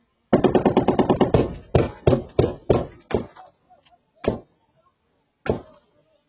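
Automatic rifle gunfire heard from inside a parked car: a rapid burst lasting about a second, then about seven single shots, further apart toward the end.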